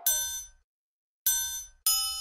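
Three bright bell-tone hits opening a jerkin' hip-hop beat, each with a low bass note under it and ringing out quickly, with silent gaps between. The first comes at the start, the next two near the end in quick succession.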